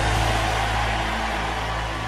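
Sustained low background-music tones, held steady, under an even wash of noise.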